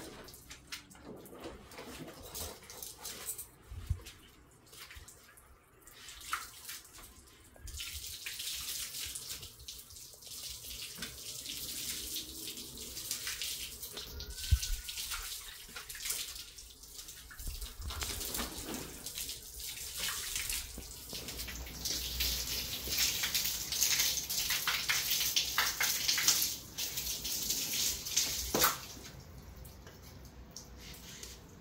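Water running steadily from a hose onto a tiled floor, starting about eight seconds in, getting stronger later and cut off sharply near the end. A few light knocks sound along with it.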